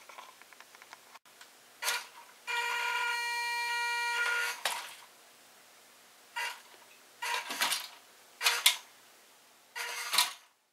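Small brushed electric motor and gearbox of a WPL B-1 1:16 RC truck whining in short bursts as it is driven. One steadier run lasts about two seconds.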